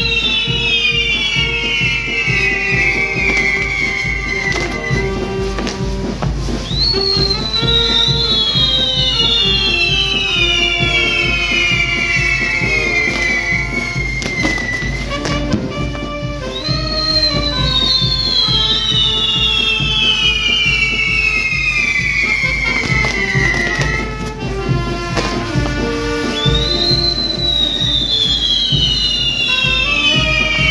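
Music playing while a pyrotechnic castillo burns. Bundles of high whistles from the fireworks each fall slowly in pitch over about seven seconds and start again about every ten seconds.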